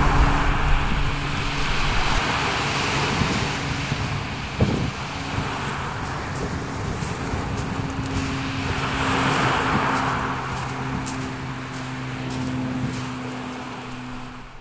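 Waves breaking and washing up a shingle beach, the surf swelling twice, with small clicks of pebbles in the backwash and a steady low tone underneath.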